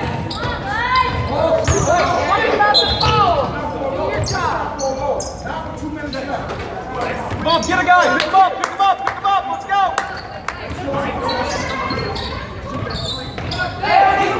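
A basketball being dribbled on a hardwood gym floor during play, with shouting voices of players and spectators echoing in the large gym.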